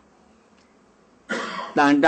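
A pause with only faint room tone, then about a second and a quarter in an elderly man coughs briefly, and his voice starts up again right after.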